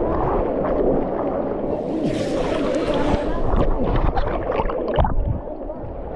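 Fast, muddy river rapids rushing and churning right at the microphone, with water sloshing and splashing over a camera held at the waterline. A burst of spray hiss comes about two seconds in, and the sound turns duller near the end as the camera dips into the water.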